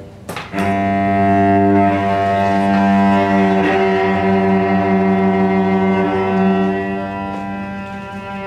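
Solo cello bowed in a slow, sustained drone: a held low note with a rich stack of overtones. Just after the start the sound breaks off briefly with a click, then the drone resumes and holds steady.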